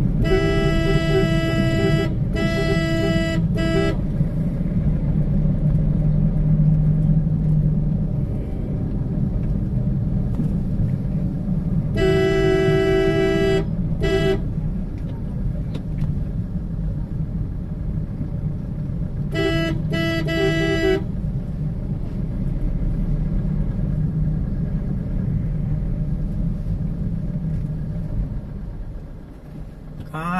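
Steady low rumble of a vehicle's engine and road noise while riding, broken by loud two-note vehicle horn blasts: three near the start, two about twelve seconds in, and two short ones about twenty seconds in.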